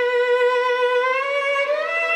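Solo violin holding one long bowed note, then sliding smoothly up to a higher note in the second half.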